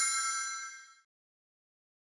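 A bright, bell-like chime sound effect: several clear tones ringing together that fade out within about a second, followed by dead silence.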